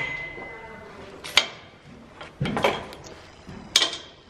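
Metal tack fittings clinking: a sharp clink with a brief ringing tone at the start, another clink about a second and a half later, and a third near the end, with a duller rustle between them.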